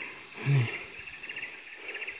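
Steady, high-pitched chorus of forest insects with a fine rapid pulsing. About half a second in, a person gives one short low grunt.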